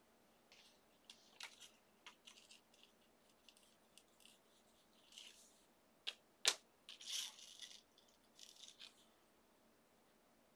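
Gold embossing powder shaken from a small jar onto a stamped paper envelope over a paper plate: faint scattered rustles and short hisses of grains falling on paper and of the envelope being handled. A little past halfway come two sharp taps, the second the loudest sound, then a longer rustle.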